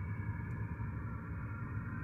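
A faint, steady background hum with a few held tones, unchanging throughout.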